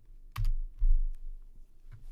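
A few keystrokes on a computer keyboard: a sharp key click about a third of a second in, then duller thumps, the loudest just under a second in, as the pasted link is entered in the browser.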